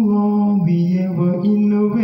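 A man's voice chanting a poem unaccompanied, holding long notes that step up and down in pitch.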